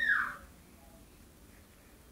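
A short high-pitched call that glides up and falls away in the first half second, then near silence: quiet room tone.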